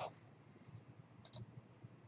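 Faint computer mouse clicks: two quick pairs of clicks a little over half a second apart.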